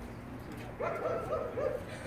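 A man humming a short tune in about five held notes, lasting about a second, over a steady low background rumble.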